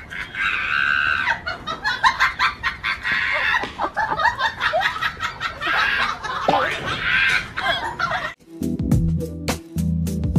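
Chickens squawking and clucking in loud, repeated bursts. About eight seconds in they cut off abruptly and music with a beat takes over.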